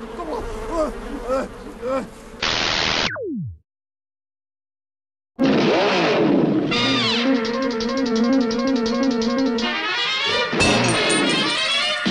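A man crying out under a swarm of buzzing bees in a film scene. The sound sinks into a falling, slowed-down pitch drop and cuts out. After about two seconds of silence, rhythmic outro music starts and runs on.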